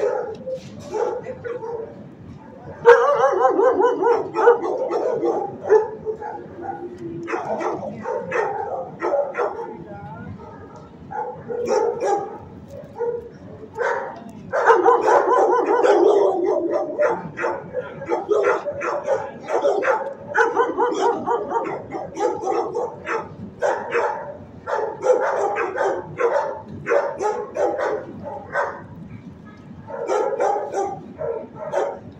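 Several dogs barking and yipping over one another without a break in a shelter kennel block, loudest about three seconds in and again around fifteen seconds in.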